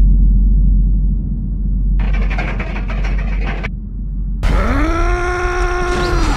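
Added film sound effects: a sudden deep hit that leaves a loud low rumble. About two seconds in comes a brief burst of noise, and near the end a groan that rises in pitch and then holds.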